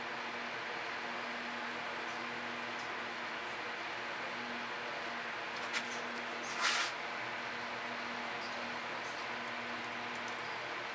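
Steady background hiss with a faint low hum. A single click comes just before six seconds in, followed shortly after by a brief scrape.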